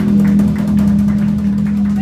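Live blues band holding a long low note: one steady tone rings on loudly, easing off a little toward the end.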